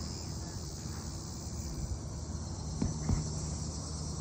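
Steady high-pitched insect chorus over a low rumble, with two faint knocks about three seconds in.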